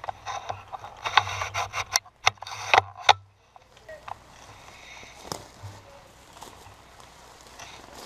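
Leaves, twigs and a leaf ghillie suit rustling and crackling as someone shifts through dense undergrowth: a busy run of crackles and scrapes for the first three seconds, then quieter, scattered rustling.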